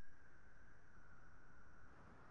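A quiet pause holding only a faint steady high-pitched tone over a low background hum.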